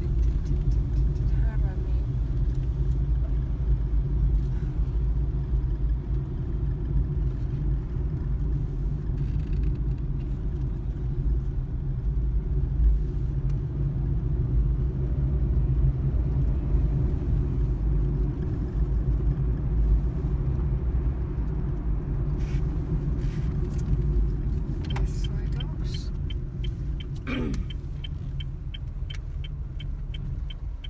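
Steady low road rumble inside a moving car's cabin. A quick, evenly spaced ticking comes in over the last few seconds.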